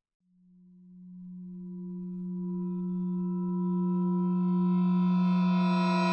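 A single sustained synthesized tone, a film-score drone, swells up from silence. It grows louder and brighter as higher overtones fill in over several seconds, then holds at full strength.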